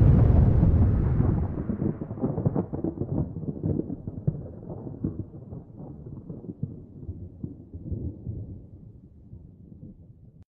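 A deep rumbling boom dying away over several seconds, with scattered crackles through it, fading out by the end.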